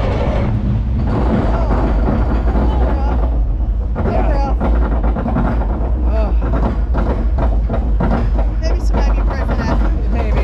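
Arrow Dynamics steel looping roller coaster train running along its track, a steady deep rumble, with riders' voices shouting over it several times.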